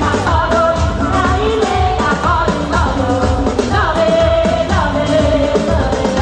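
A woman singing a pop-style gospel song live into a microphone, backed by a band of keyboard, electric guitar and drums, at a loud, steady level.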